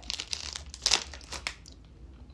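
Plastic energy-bar wrapper crinkling as it is handled, in a run of irregular crackles that are strongest about a second in.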